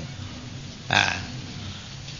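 A single short throat sound from a person, like a brief grunt or breath, about a second in, over the steady hum and hiss of an old lecture tape recording.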